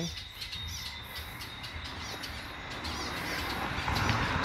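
Birds chirping in many short, quick, high calls, with a rush of noise growing louder near the end.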